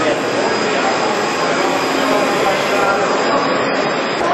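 Steady, loud machine noise with a thin high whine, with people's voices mixed in.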